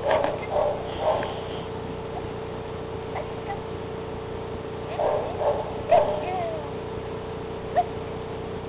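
Standard poodle giving a few short whimpers and yips, in two clusters: one right at the start and one about five to six seconds in, over a steady hum.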